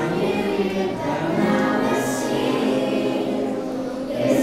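Three young girls singing a song together, accompanied by an acoustic guitar, with long held notes.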